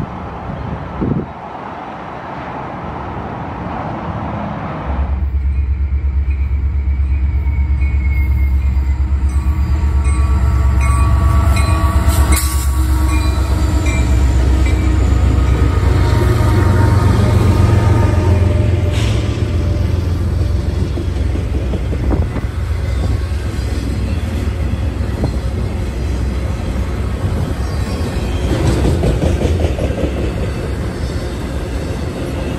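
Union Pacific freight train passing close by: the low, steady rumble of its SD70M diesel locomotives comes in suddenly about five seconds in. It carries on with the rolling of the cars and occasional wheel clacks, with wind on the microphone.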